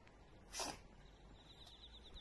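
A dog sneezes once, briefly, about half a second in.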